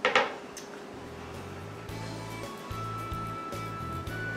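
A clatter right at the start as the wooden serving board is set down on the counter. Soft background music with a bass line that pulses on and off comes in about a second in.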